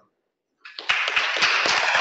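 A brief silence, then an audience starts applauding about a second in. The clapping is dense and steady.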